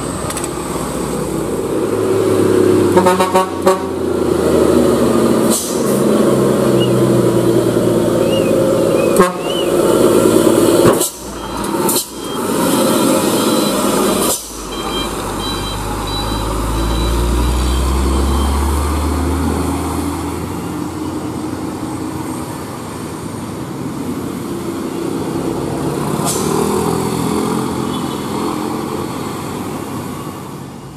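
Heavy trucks, cars and motorcycles passing through a hairpin bend one after another, their engines rumbling. There is a short horn toot a few seconds in, and a deep truck engine rumble swells up around the middle.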